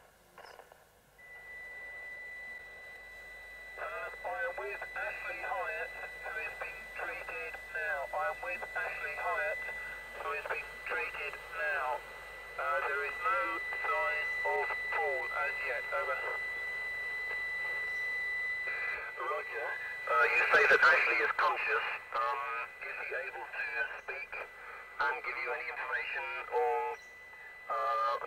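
A voice coming over a two-way radio, thin and tinny in a narrow band, with a steady whistling tone underneath. A louder burst of static comes about twenty seconds in.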